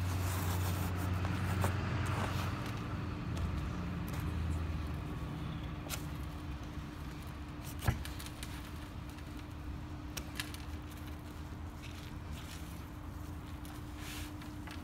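A small blade cutting and tearing open a felt fabric plant pouch around a root ball, heard as faint scrapes and scattered clicks, with one sharp click just before the middle. Under it a steady low hum runs throughout, and a low rumble fills the first few seconds.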